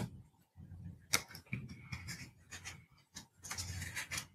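Faint clicks and rustling of something being handled close to the microphone, with one sharper click about a second in and a longer rustle near the end.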